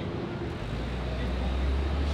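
Low, steady rumble of a passing vehicle on a city street, coming in about half a second in and holding.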